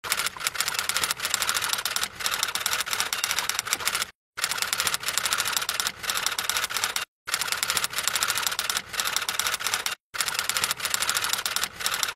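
Typewriter sound effect: rapid clacking keystrokes in long runs, broken by three short pauses, as text is typed out on screen.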